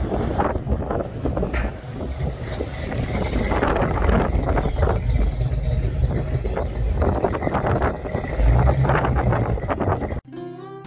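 Classic car's engine running as the car drives past, heavy on the low end and swelling slightly near the end.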